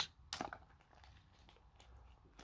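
A few light metallic clicks from the hidden fold-over clasp and links of a stainless steel TAG Heuer Link bracelet being worked open by hand. The sharpest click comes about a third of a second in, with a fainter one near the end.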